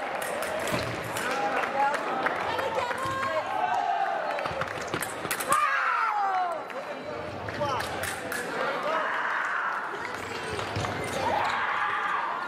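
Sabre fencing exchange in a large hall: footfalls on the piste and sharp clicks of blades, with voices around the hall. About halfway through comes a loud shout falling in pitch, a fencer's cry as a touch is scored.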